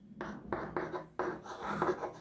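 Chalk writing on a chalkboard: a run of short, irregular scratching strokes as terms of an equation are chalked up.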